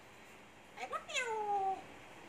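African grey parrot giving one drawn-out call, about a second long, that rises briefly and then falls in pitch.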